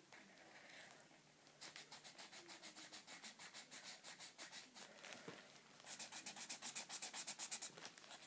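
Felt-tip Sharpie marker scribbling on a paper coffee filter: quick back-and-forth colouring strokes, several a second, in two runs with a short pause between them. The second run is louder.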